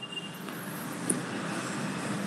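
Steady rushing background noise from a video-call participant's open microphone, swelling slightly in the first half second as the line comes on, with a faint tick about a second in.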